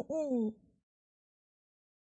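A woman's voice in a short sing-song 'hoo'-like vocalisation, ending on a longer note that falls in pitch and stops about half a second in.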